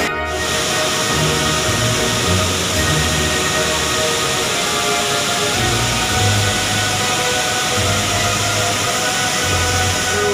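Background music with held notes and a bass line that changes every second or so, over a loud, even rushing hiss.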